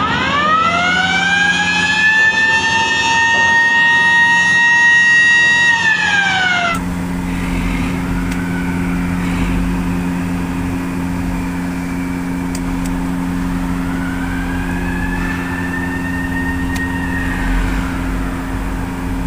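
Electric hooter winding up in pitch, holding a steady wail for about five seconds, then winding down, sounding because the motor's contactor has picked up. After a cut, a steady low hum, with the hooter rising faintly again near the end.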